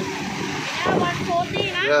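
People's voices talking, with a jet ski engine running underneath as it tows a banana boat out through the shallows.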